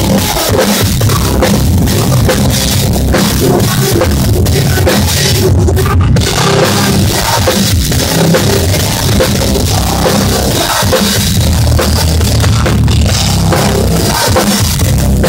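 Loud live rock band playing, with the drum kit up front: a Pearl kit and Sabian cymbals struck hard and continuously, heard from just behind the drummer.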